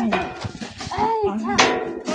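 Men's voices calling out in short, repeated, drawn-out shouts, one every second or two, like a work chant. There is a brief noisy burst about one and a half seconds in.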